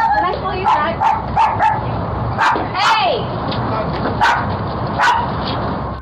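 A guard dog barking repeatedly in short bursts, mixed with people's voices, heard through a Ring doorbell camera's microphone.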